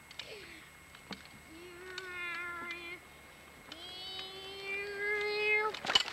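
A child's voice holding two long, steady notes, the second a little longer and rising slightly in pitch, with scattered clicks and a loud sudden sound right at the end.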